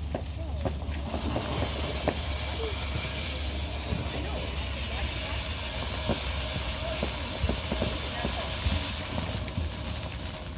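Ground fountain firework spraying sparks with a steady hiss that builds about a second after lighting and thins near the end, with scattered small pops.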